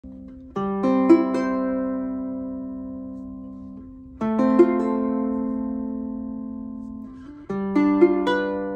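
Kala Revelator Nautilus Premium Korina electric tenor ukulele, strung with a wound low-G and wound C, played as three slow arpeggiated chords. Each chord is plucked note by note and left to ring out, fading gradually before the next one comes in about every three to four seconds.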